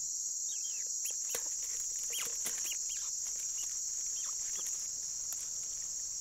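Night-time tropical forest insect chorus: a steady high-pitched trilling buzz, with faint short chirps scattered through it.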